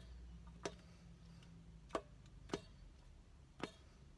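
Trumpet piston valves being pressed and released to finger a D major scale without a note played: four faint clicks at uneven intervals.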